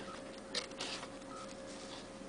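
Faint handling noise of an iPod touch being turned in the fingers: two short soft scuffs about half a second and just under a second in, over a faint steady hum.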